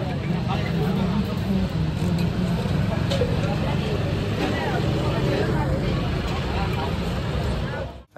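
Busy street ambience: a steady low rumble of passing traffic with indistinct voices of people around. The sound cuts off abruptly at the end.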